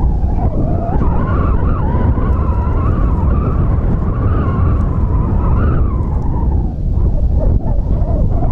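Wind rumbling heavily on the microphone, with a wavering high tone running over it that fades out about seven seconds in.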